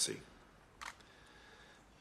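A single camera shutter click about a second in, over near-silent room tone.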